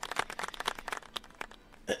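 A fast, irregular run of faint clicks and crackles that dies away about a second and a half in.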